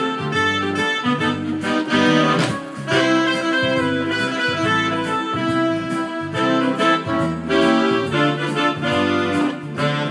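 Yamaha Tyros5 arranger keyboard played with both hands: a sustained lead melody over auto-accompaniment bass and a steady drum beat.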